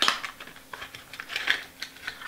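Handling of a small cardboard earphone box as it is opened and the wired earphones are pulled out: a sharp click, then light scattered clicks and crinkles of card and cable.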